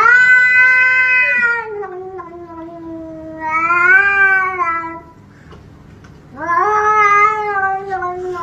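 A grey shorthair cat yowling: three long, drawn-out calls, the first rising sharply at its start and then slowly falling, the other two shorter with a wavering pitch.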